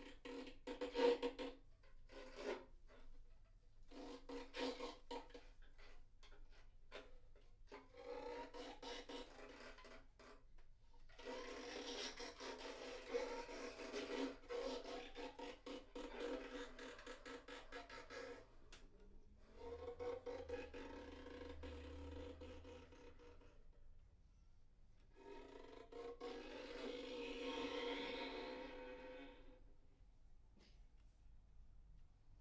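Two bowed violin-family instruments playing a scratchy, rasping duo passage: short choppy strokes at first, then longer sustained passages around a held middle note, with brief gaps between them.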